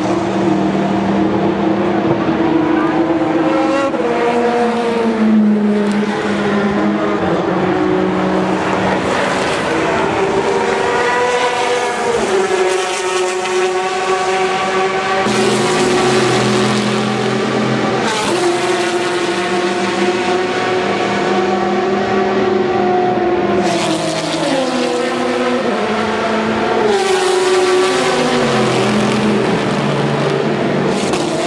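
Several endurance race cars, sports prototypes and GT cars, running at racing speed past the fence. Their engine notes overlap and keep climbing through the gears and sliding down as cars pass or brake and downshift, with no break in the noise.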